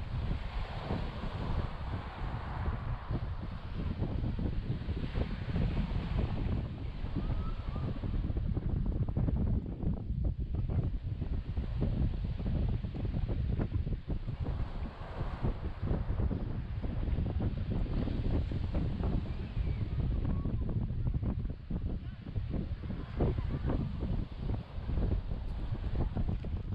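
Wind buffeting the microphone: a gusty low rumble that rises and falls unevenly.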